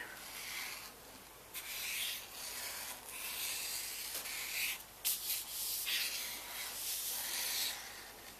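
A paint-marker tip scribbling on cheap drawing paper: irregular scratchy strokes of varying length with short gaps between them, and a sharp tap about five seconds in.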